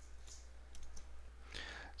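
Quiet pause with a few faint clicks over a low, steady hum.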